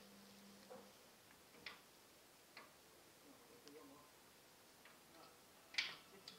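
Near silence with a few faint, isolated ticks, then one sharper click just before the end.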